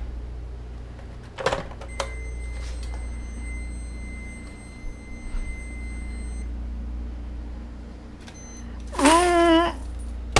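A heavy glass jar full of coins and paper coin wrappers being handled, with a few sharp clicks and light taps. Near the end comes a loud, brief wavering pitched sound as the jar of change is lifted.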